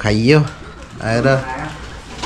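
A man's wordless voice sounds: a hum whose pitch rises and falls right at the start, then a shorter, steadier one about a second in.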